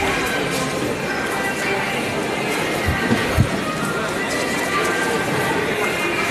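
Busy store-hall ambience: background music and indistinct chatter from shoppers, with two short low thumps near the middle.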